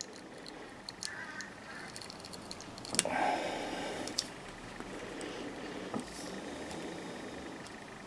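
Utility knife blade slitting along a length of flattened nylon strimmer line held against a vise: a faint scraping of blade on tough plastic, a little louder about three seconds in, with a couple of small clicks.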